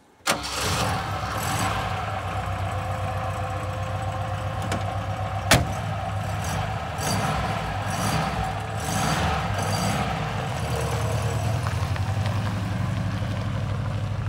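Saab 95's Ford-built V4 engine starting at once and idling steadily. A single sharp bang about five and a half seconds in, the car door being shut.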